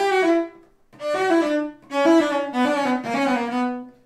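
Solo cello, bowed, playing a fast passage in four short runs of notes with brief breaks between them. The left hand is held in a block position, all four fingers set over the strings at once.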